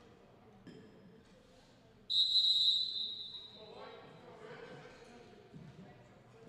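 A referee's whistle gives one sharp, steady blast about two seconds in, the loudest sound here, fading over about a second; it signals the end of a timeout. Indistinct voices in the gym follow.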